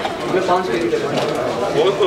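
Indistinct men's voices talking in a room, softer and less clear than the nearby speech.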